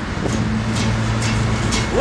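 Acoustic guitar strummed in a steady rhythm, a stroke about every half second, between sung lines of a folk song. Under the strumming a low note is held for about a second and a half.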